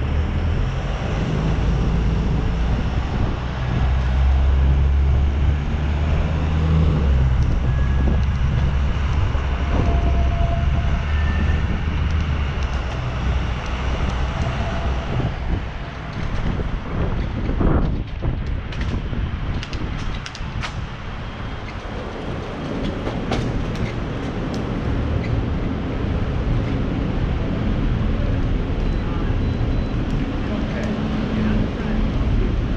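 City riding noise recorded from a moving bicycle: a steady low rumble of wind and traffic. It is heaviest in the first half, with the engine of a box truck running just ahead, then eases and is broken by a few sharp clicks and knocks past the middle.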